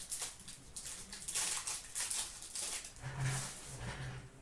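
Foil wrapper of a hockey card pack crinkling and tearing as it is opened, in several short bursts of rustling, with the cards inside being handled.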